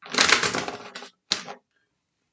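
Tarot cards being shuffled by hand: a rapid run of card clicks lasting about a second, then a second, shorter run.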